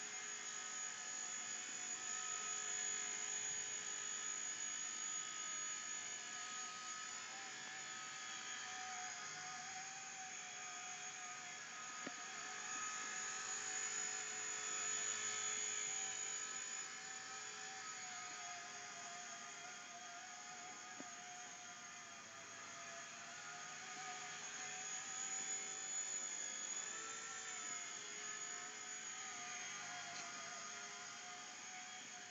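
Blade mSR micro RC helicopter in flight, its main rotor spinning trimmed carbon-fibre blades: a steady electric whine and rotor whir whose pitch wavers gently as the throttle is worked.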